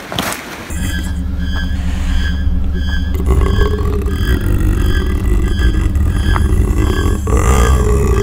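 Edited-in ominous sound effect: a deep droning rumble with a short high beep repeating about twice a second. It starts suddenly and cuts off abruptly at the end.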